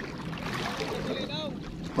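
Steady noise of shallow seawater and wind on the microphone, with one short, high, arching call about a second and a half in.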